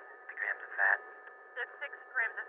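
Speech heard over a telephone line, thin and cut off in the lows and highs, in two short bursts of words with faint steady line tones underneath.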